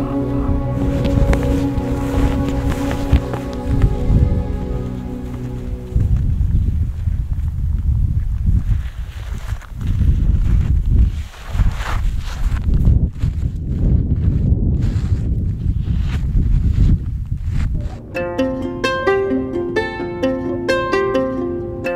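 Soft instrumental background music that stops about six seconds in. It gives way to a heavy, uneven low rumble of wind buffeting the microphone outdoors in the snow. Plucked-string music comes back in near the end.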